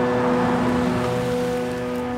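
A hiss that swells and then fades over about a second and a half, from a car's tyres on a wet road as it pulls up, under soft background music with held tones.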